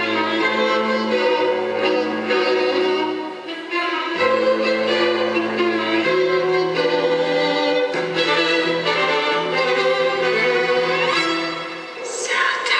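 Tango music with violins and other bowed strings playing for the dancers, with a brief dip in level about three and a half seconds in.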